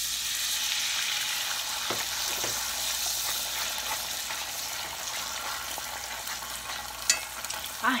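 Beaten eggs sizzling in a hot frying pan, a steady hiss, with a few light clicks of a spoon against the pan and one sharp click about seven seconds in.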